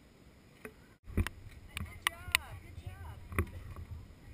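After a sudden break in the sound about a second in, a low rumble with several sharp clicks and short, high-pitched voices that rise and fall.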